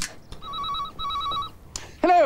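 Telephone with an electronic ringer trilling in a double ring: two short warbling rings of about half a second each, with a brief gap between them.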